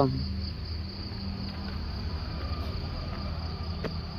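A steady high-pitched chorus of insects, with a low rumble underneath.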